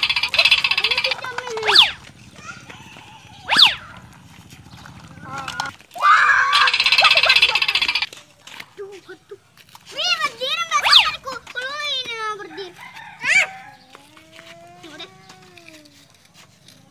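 Young children shouting and squealing at play, with a few sharp high shrieks; the voices turn quieter in the second half.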